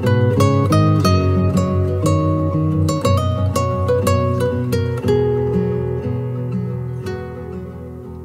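Background music: plucked acoustic guitar picking quick successive notes, fading gradually over the last few seconds.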